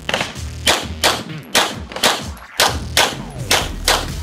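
A semi-automatic pistol fired in a rapid string of about nine shots, roughly two a second with uneven gaps as the shooter moves between targets in a USPSA Limited-division stage.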